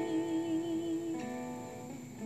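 Acoustic guitar playing under a sung note held with vibrato for about a second, which then drops to a lower steady note.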